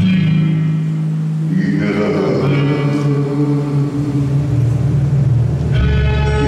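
Instrumental passage of a slow romantic ballad: sustained chords with a swell about two seconds in, and deep bass notes coming in near the end.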